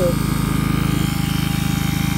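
Harbor Freight 12-volt DC non-submersible transfer pump running steadily: a low motor thrum with a fast, even pulse, as it pumps water at full flow.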